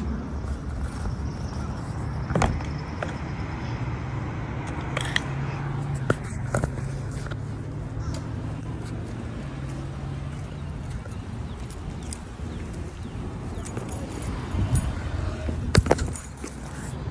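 A steady low motor hum, like an engine running nearby, with a few sharp clicks and knocks, the loudest cluster near the end.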